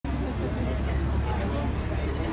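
Street café ambience: a steady low rumble of road traffic with indistinct voices talking.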